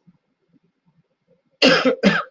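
A man coughing: two loud coughs near the end, one right after the other.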